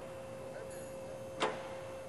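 Quiet workshop background with a faint steady hum, and one sharp click about one and a half seconds in.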